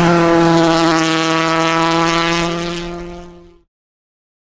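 Citroën DS3 WRC rally car engine running at one steady pitch. The sound fades out near the end.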